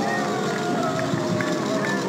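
A crowd of many voices shouting at once, a sound effect played with the knights' battle animation; it starts abruptly just before this.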